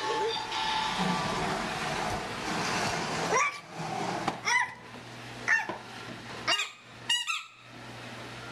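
Plastic wheels of a toddler's push-along ride-on toy car rolling over a tile floor, then a string of short high squeaks about once a second, with a quick cluster of them near the end.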